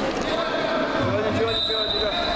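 Indistinct voices calling out in a large sports hall, with low thuds from the wrestlers on the mat. A thin, steady high tone enters in the second half.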